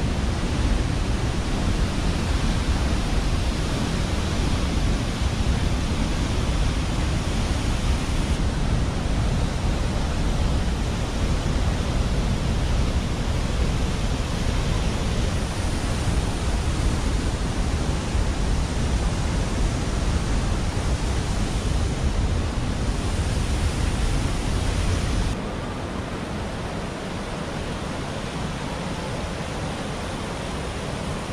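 Steady rushing roar of Wahclella Falls pouring into its plunge pool, heavy in the low end. About 25 seconds in it drops suddenly to the quieter, steady rush of creek water over rocks.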